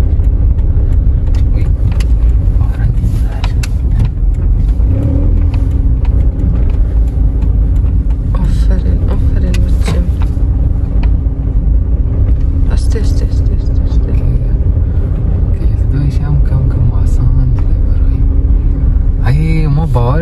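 A Toyota sedan's engine and road noise heard from inside the cabin while driving slowly: a steady low rumble with a constant hum.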